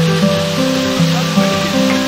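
Background music led by acoustic guitar, its held notes and chords changing about once a second.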